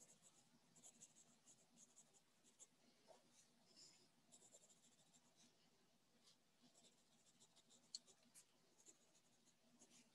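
Near silence with faint, irregular scratching of a pen writing on paper, picked up over a remote-meeting microphone; a single sharper click about eight seconds in.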